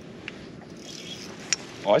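A spinning reel and rod worked under the load of a hooked fish: a faint whirr and a few small ticks over a steady background of wind and water, with one sharp click about one and a half seconds in. A man's short 'oh' comes at the very end.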